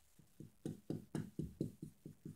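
A quick run of soft, low knocks, about four a second, starting about half a second in and fading out near the end.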